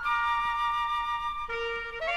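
Latin American dance orchestra starting a number with several high, held woodwind notes sounding together. A lower sustained note joins about one and a half seconds in.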